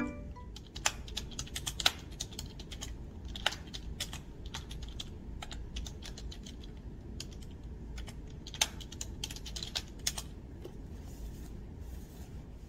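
Typing on a computer keyboard: irregular key clicks, with a few louder strokes.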